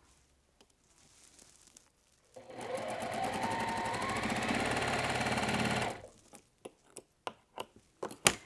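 Juki sewing machine stitching a seam through quilt patchwork. It starts about two seconds in and runs for about three and a half seconds, with rapid needle strokes and a whine that rises as it speeds up. It then stops, followed by a few sharp clicks.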